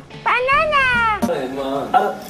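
A single drawn-out cat meow that rises and then falls in pitch, followed by people talking from a little past halfway.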